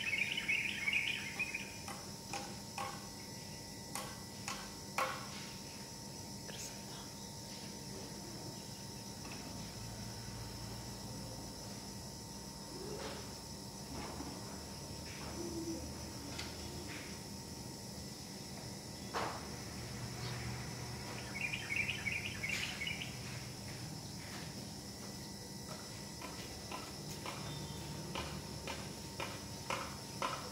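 Steady outdoor background noise with short bursts of rapid chirping near the start and again about two-thirds of the way through, and scattered faint clicks between them.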